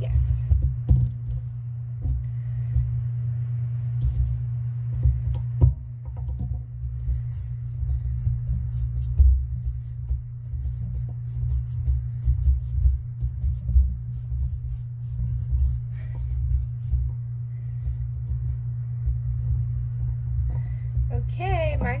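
Hands rolling modeling clay on a paper-covered tabletop: uneven low rubbing and bumping with a few small knocks, over a steady low hum.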